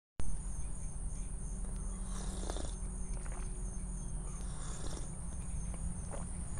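Insects chirping in a steady, high-pitched pulsing drone over a low steady hum, with a few light handling knocks about two to three seconds in.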